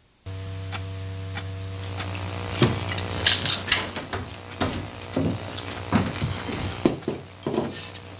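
Cutlery clinking and scraping on ceramic plates and bowls, with sharp clinks bunched together a few seconds in, over a steady electrical hum that starts abruptly.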